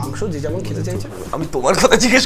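Men talking, with a low steady tone under the first second and louder speech near the end.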